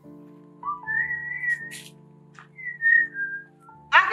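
Background score: a whistled melody in two short gliding phrases over sustained keyboard chords.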